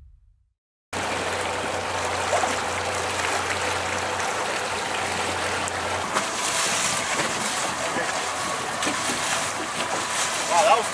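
After the tail of music fades out and a moment of silence, outboard motors idle on boats lying alongside each other, under steady sloshing and churning water. A low engine hum drops out about six seconds in, leaving the water noise.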